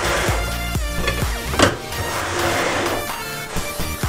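Background music with a steady, repeating bass line.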